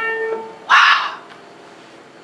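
An Austrian-made grand piano's single struck note rings and fades over the first half second. It is followed about a second in by a short, loud, breathy burst of noise.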